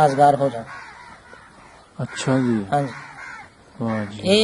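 A bird calling a few times in the background, after a man briefly says "haan haan".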